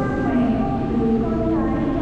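A Vietnamese Catholic hymn being sung: a voice holding long notes in a slow melody over musical accompaniment.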